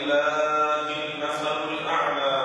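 A man's voice chanting one long, drawn-out note into a microphone, held almost level in pitch.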